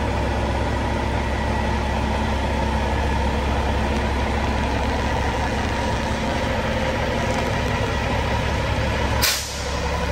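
Peterbilt 389 semi truck's diesel engine idling steadily, with a short, sharp air-brake hiss about nine seconds in.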